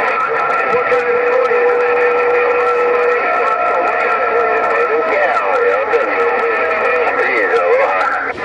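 President HR2510 radio receiving several stations at once on 27.085 MHz: steady and wavering whistles over garbled, overlapping voices, with a falling whistle near the end.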